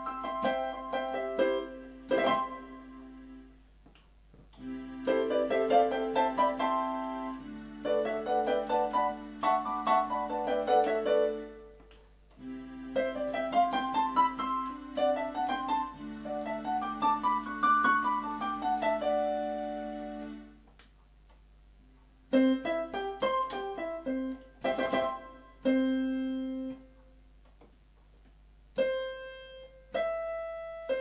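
Yamaha PSR-270 keyboard playing a piano-like voice with its harmony effect on: held low notes under melody runs that climb and fall, each melody note joined by added harmony notes. It comes in several short passages with brief pauses between.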